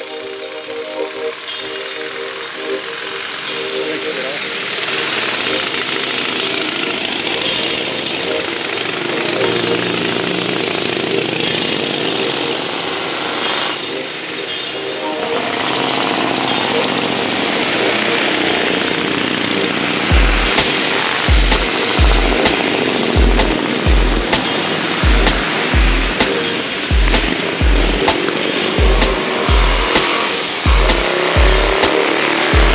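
Engines of several vintage three-wheeled cyclecars (tricyclecars) racing past on the course, the engine noise swelling as the cars come by. A regular low thump, about twice a second, runs through the last third.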